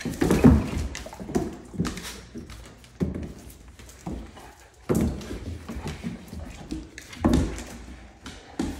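Two Great Dane puppies play-fighting on a hardwood floor: irregular thuds and scuffles of their paws landing and scrabbling as they rear up and wrestle, with about half a dozen louder thumps.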